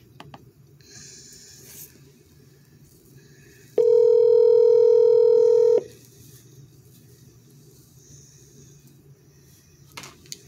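Telephone ringback tone heard through a phone's speaker: one steady ring lasting about two seconds, a little under four seconds in, as an outgoing call rings at the other end.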